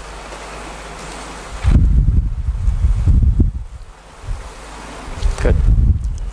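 Low, irregular rumbling on the microphone, like wind or handling noise, in two stretches: a long one about two seconds in and a shorter one near the end, after a soft hiss at the start.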